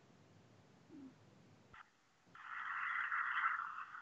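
A faint click, then a steady hiss that starts a little over two seconds in and fades out near the end.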